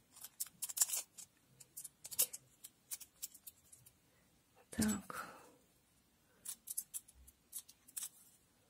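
Thin holographic nail-transfer foil crinkling and crackling as it is pressed onto and peeled off a nail tip: a string of small sharp, irregular crackles.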